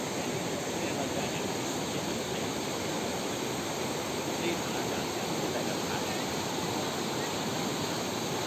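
Fast muddy floodwater rushing steadily through and past a broken stone arch bridge: a continuous, even rushing noise.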